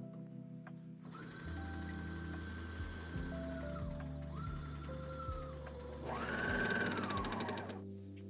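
A serger (overlocker) stitching in three runs, each speeding up and then slowing to a stop; the last run, near the end, is the loudest. Background music plays under it.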